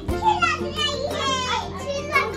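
Children's high-pitched voices over steady background music.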